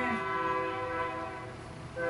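Soft background music: a sustained keyboard chord held steadily and fading slightly toward the end.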